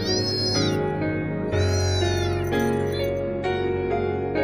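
A young tabby kitten meowing: two clear high-pitched meows that rise and fall, about a second and a half apart, and a faint short one near the end, over soft piano music.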